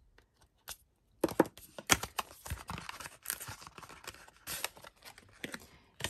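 Paper-and-plastic packaging of a stamp and die set being opened and handled: starting about a second in, a rapid string of sharp clicks and crackly rustles as the sealed card sleeve is slit and pulled open and its contents are slid out.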